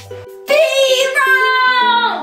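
Light background music with plucked-string notes, joined about half a second in by a loud, high voice holding one long note that slides slightly down and fades out near the end.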